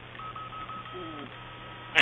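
A faint run of short beeps at one steady pitch, like a phone keypad, over a low steady hum, with a brief low gliding call about a second in. It ends in one short, loud, sharp snap.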